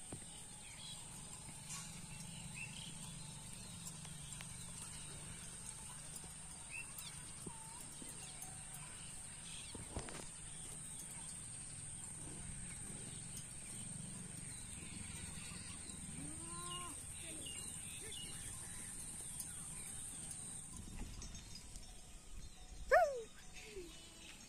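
Faint rural outdoor ambience: a steady high-pitched insect drone that stops a few seconds before the end, occasional short bird chirps, and one louder falling call about a second before the end.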